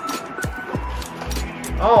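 Background music with a steady low beat, and a woman's drawn-out "Oh" starting near the end.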